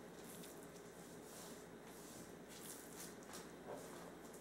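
Faint squishing and rustling as a gloved hand rubs seasoning salt into a scored raw shad fillet, in a few soft strokes.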